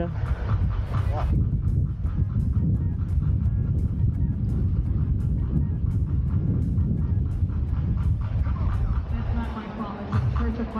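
Wind buffeting the microphone: a steady low rumble that rises and falls constantly, with faint music and voices behind it.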